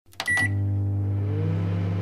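Electronic charging sound effect: a couple of clicks and a short high beep, then a steady low hum with a faint tone rising in pitch about a second in.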